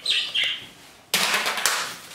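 Pet budgie giving two short, high, falling chirps, then about a second in a loud scratchy burst of noise lasting under a second.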